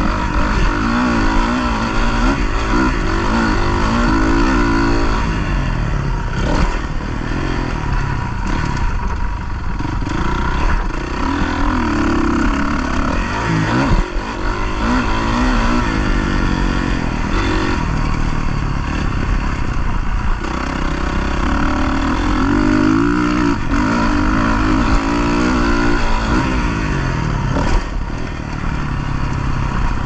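Motocross dirt bike engine revving hard and easing off again and again as it is ridden along a dirt track, its pitch climbing in repeated sweeps. There is a brief knock about halfway through.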